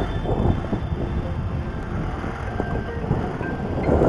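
Yamaha Mio Gravis scooter's small single-cylinder engine running steadily under load up a steep climb, with a low rumble of wind and road noise on the camera microphone.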